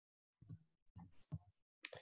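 Near silence broken by a few faint, short voice or mouth noises from about half a second in, and a sharp click near the end.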